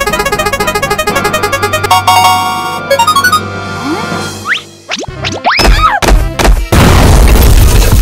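Cartoon sound effects: a prize wheel spinning with rapid ticking that slows and stops at a little over three seconds. Then come a few rising and falling boing-like glides and sharp knocks, and a loud blast that fills the last second or so.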